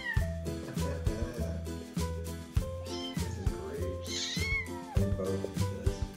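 Kittens mewing while they play-wrestle: high, bending cries near the start, about halfway, and loudest a little after, over background music with a steady beat.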